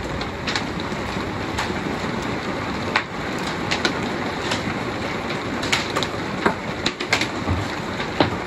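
Thunderstorm rain and wind making a steady, dense roar, with scattered sharp taps and cracks through it.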